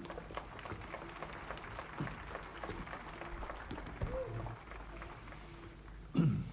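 Quiet pause in a large room during silent prayer: faint room hum with scattered small clicks and rustles, and a brief faint voice sound a little after four seconds in.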